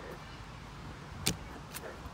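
Wind buffeting the microphone in an open field, a steady low rumble, with one sharp click a little past halfway and a fainter one near the end.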